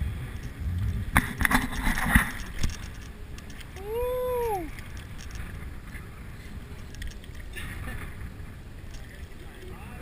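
Steady wind and water noise against a small boat's hull, with a cluster of sharp knocks and handling noise in the first few seconds. About four seconds in, a single short whooping call from a man rises and falls in pitch.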